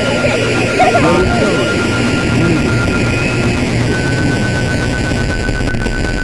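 Dense experimental noise collage: a thick, noisy texture over a low hum, with a steady high tone that steps a little higher about four seconds in. Brief warped, voice-like fragments surface in the first two seconds.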